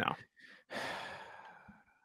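A man's sigh: one breathy exhale that starts just under a second in and fades away over about a second.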